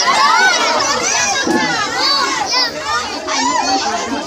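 Crowd of young people shouting and shrieking over one another, many high voices at once, as they scramble to catch thrown saweran coins.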